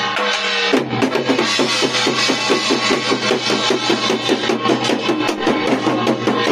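Music carried by fast, even drumming; about a second in the beat picks up to roughly five strokes a second over a sustained ringing tone.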